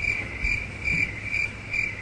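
Cricket chirping sound effect, one steady chirp about twice a second, overlaid on an awkward silence as the classic 'crickets' gag for a question left unanswered.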